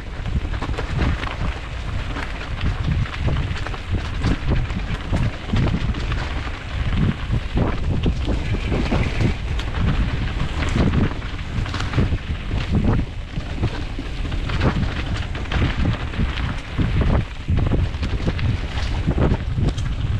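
Mountain bike riding down a rough, leaf-covered dirt trail: wind buffeting the microphone in a steady low rumble, tyres rolling over leaves and dirt, and frequent knocks and rattles as the bike hits roots and rocks.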